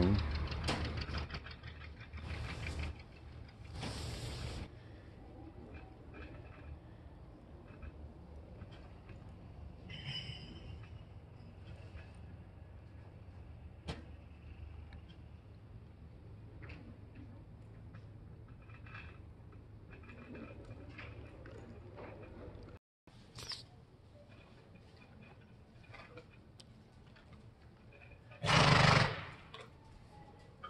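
Quiet indoor arena with a steady low hum and faint scattered clicks of saddle and bridle tack being handled. Near the end, one loud call from a horse.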